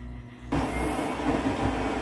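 Midea front-loading washing machine starting its wash tumble: a steady rumbling of the turning drum and wet clothes comes in suddenly about half a second in, over a low hum.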